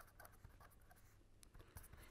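Faint scratching of a pen writing on paper.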